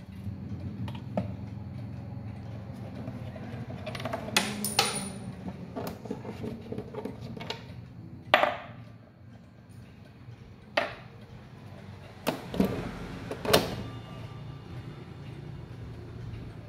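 Several sharp metallic clicks and knocks against wood as the parts of an old Junghans wall clock are handled inside its wooden case while the movement is being taken out; the loudest knock comes a little past the middle.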